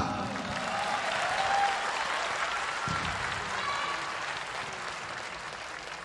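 Arena audience applauding, slowly dying down.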